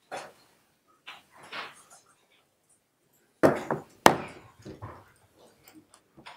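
Indistinct chatter of people in a room picked up by a courtroom microphone, with a loud thump and a sharp knock close together a little past the middle.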